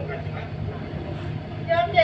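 A steady low hum with faint voices through the stage sound system, then a man's voice, loud and close to the microphones, starts near the end.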